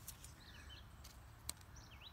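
Near silence: a faint low rumble with a few faint high bird chirps, and one sharp click about one and a half seconds in.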